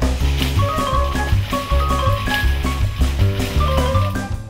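Background music with a steady beat, a moving bass line and a melody in held notes.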